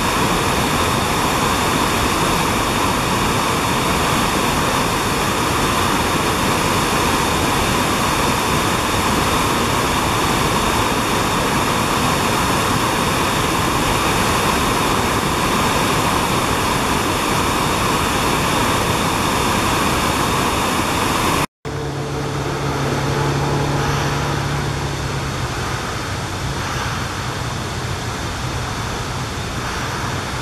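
River rapids rushing steadily over rocks. About two-thirds of the way through the sound cuts off abruptly. It is followed by a quieter flow of water with a low hum in its first few seconds.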